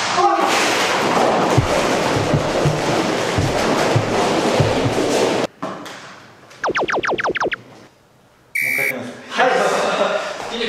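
Hundreds of rubber super balls raining down and bouncing on a hard floor just after the balloon holding them bursts, a dense clatter with people's voices over it, cut off about five and a half seconds in. Then an edited-in comedy sound effect: a quick run of about eight falling whistle notes, and a short buzz.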